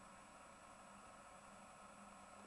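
Near silence: room tone with a faint steady hiss and hum.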